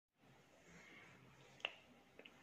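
Near silence, broken once about three-quarters of the way in by a single short click.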